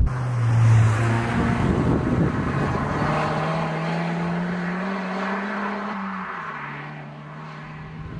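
Mitsubishi Colt CZT's 1.5-litre turbocharged four-cylinder engine pulling hard, its note climbing steadily with revs, then dropping suddenly about six seconds in at a gear change and carrying on lower. It is loudest in the first second and fades gradually after that.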